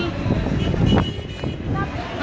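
Busy car park at night: a steady low rumble of traffic and wind on the phone microphone, with scattered voices of people nearby.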